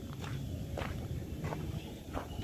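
Footsteps on a paved path, a few steps about half a second apart, over a low steady rumble.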